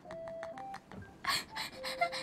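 A few short electronic beep tones at different pitches, the first held about half a second, like a simple sound-effect jingle. A brief breathy laugh comes about a second in.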